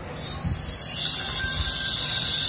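Takee Y91 smartphone's start-up music playing through the phone's own speaker as it boots, coming in a moment after the start; loud, thin and high-pitched.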